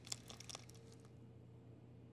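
Near silence: room tone, with a few faint soft ticks about the first half-second as melted butter is poured onto chocolate cookie crumbs in a glass bowl.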